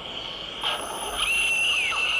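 Forest ambience of wild animal sounds: a steady high-pitched drone like insects, a short burst about half a second in, and a call that holds one high note and then falls away near the end.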